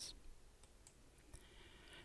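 Near silence with two faint clicks, one shortly after the start and one a little past the middle.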